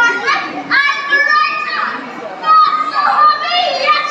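Children's voices talking and calling out close by, high-pitched and overlapping.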